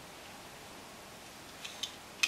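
Quiet room hiss, then two faint clicks near the end as the silver plastic fuselage halves of a model aircraft kit are brought together.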